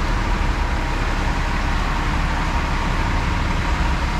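Car wash air dryers blowing: a loud, steady rush of air with a faint, even whine.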